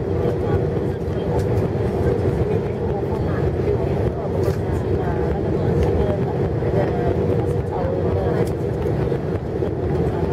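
Jet airliner cabin noise heard from a window seat over the wing on landing: a steady rumble of engines and airflow with a constant hum.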